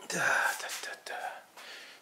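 A man's voice muttering under his breath in a breathy whisper, in a few short pieces over about a second and a half.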